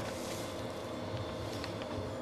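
Steady background noise of a room, an even hum with a few faint ticks near the end, as a man handles the pages of a document.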